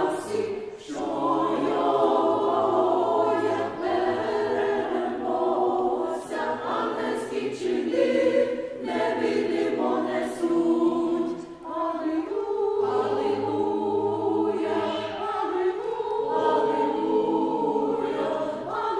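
A mixed choir of women's and men's voices singing together in sustained phrases, with short breaks between phrases.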